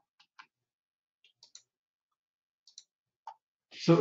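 A few faint computer mouse clicks, mostly in close pairs about a second apart, in an otherwise silent pause.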